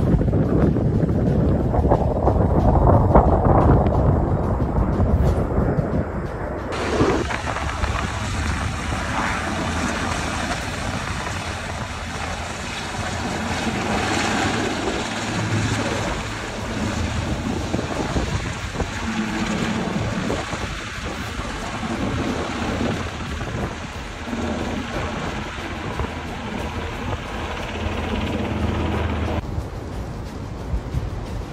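Loud, steady wind noise buffeting a phone microphone outdoors, deep and rumbling at first, then brighter and hissier after a cut about seven seconds in.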